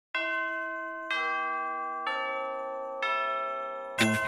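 Four bell-like chime notes struck about a second apart, each ringing out and fading before the next. The notes step down in pitch.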